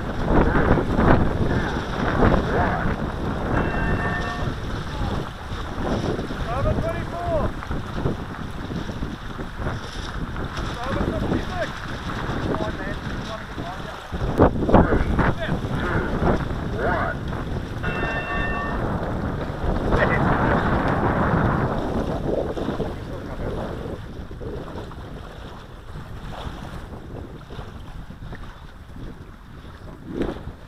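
Gusty wind buffeting the microphone, a rough rumble that eases off over the last few seconds.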